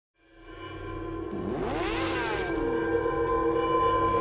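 Intro sound design for a logo: a held synthesized drone fades in from silence. About a second and a half in, sweeping tones rise and fall across it, and it builds steadily in loudness toward music.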